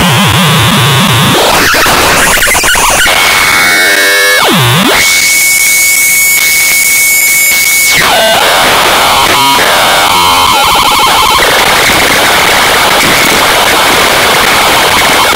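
Loud, harsh synthesizer noise from an Instruo Cš-L dual oscillator cross-patched into Plaits (Macro Oscillator 2) in VCV Rack, its pitch swept as the oscillator frequency knobs are turned. About four seconds in a tone swoops down low and back up, then a steady high whistle holds for about three seconds before breaking into fast warbling.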